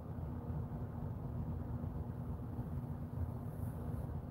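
Steady low room rumble with a faint constant hum, unchanging throughout.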